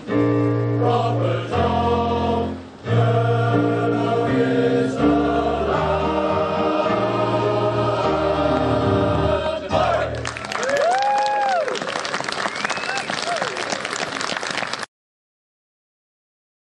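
Male voice choir singing, ending on a long held chord about ten seconds in. Audience applause and cheering follow for about five seconds and then cut off abruptly.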